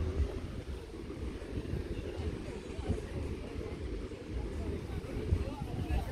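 Wind buffeting the microphone as a steady low rumble, with faint chatter of other beachgoers in the background.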